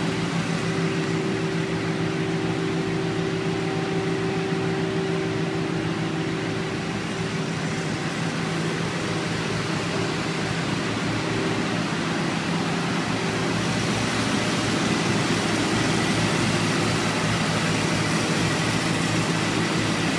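Steady drone of engine-driven machinery running on a city street, a constant low hum with a wash of noise over it; the low hum weakens a little after about twelve seconds.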